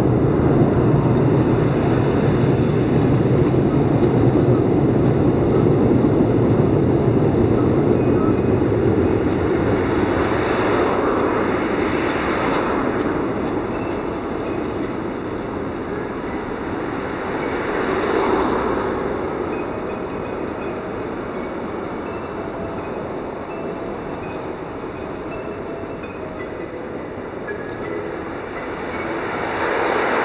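A train running along an elevated railway line: a steady low rumble that slowly fades over the first half, leaving a quieter background rumble.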